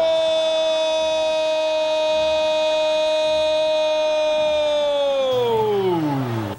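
A football commentator's drawn-out 'gooool' cry calling a goal: one loud note held steady for about five seconds, then sliding down in pitch near the end.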